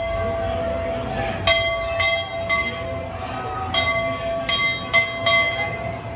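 Large hanging brass temple bell rung by hand again and again: about seven strikes at uneven intervals, each leaving a ringing tone that carries on between strikes.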